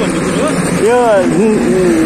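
A man's voice speaking, over steady background noise.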